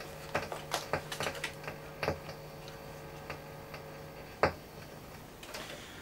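Scattered light clicks and taps, the loudest a single click about four and a half seconds in, from hands handling equipment on a workbench, over a steady low electrical hum from the powered-up amplifier that fades near the end.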